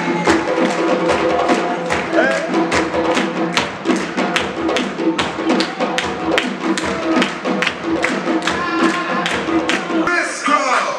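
West African-style drumming: a strap-slung djembe played by hand and a pair of tall standing drums struck with sticks, in a fast, even beat of several strokes a second, with the drum heads ringing between strokes.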